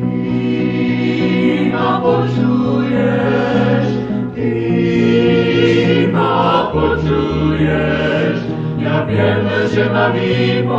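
A vocal group singing a sacred song in harmony, heard from a live recording played back from cassette tape.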